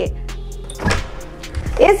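A washroom door being pulled open, a short swish about a second in, over steady background music.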